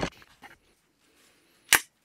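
Plastic airsoft magazine parts snapping together by hand: a sharp click at the very start, a few small clicks just after, and another sharp snap near the end.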